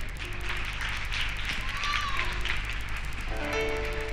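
Gift-wrapping paper crinkling and tearing close to a microphone as a wrapped package is opened. About three seconds in, instrumental music with held notes comes in.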